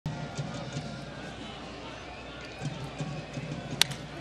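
Low ballpark crowd chatter, then near the end a single sharp crack of a wooden bat hitting a pitched baseball squarely for a base hit.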